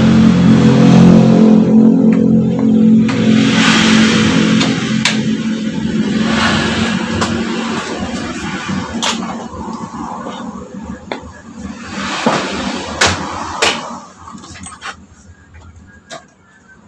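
Sharp metal clinks and knocks of hand tools on a scooter's front fork, several times, over a steady low hum that fades out about halfway through.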